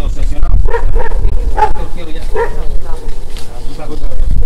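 A dog barking, several short barks, over a steady low rumble.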